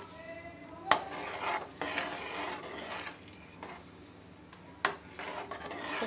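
Metal ladle stirring a thin tamarind chutney mixture in a metal kadai, scraping along the pan, with two sharp clinks of the ladle against the pan, about a second in and again near the end.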